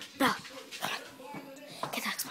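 A small dog giving a high whine that falls steeply in pitch about a quarter second in, then a few shorter whimpers, amid light clicks and scuffles while it plays.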